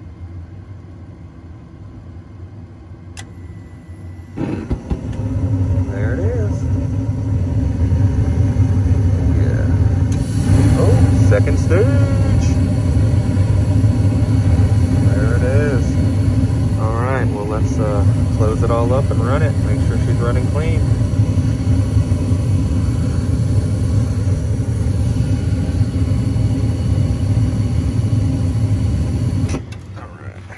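Trane XV80 gas furnace: the draft inducer runs with a low rumble, then about four seconds in the burners light and the sound jumps into a loud, steady roar and hum that holds until just before the end. The newly replaced gas valve is opening and the burners are firing.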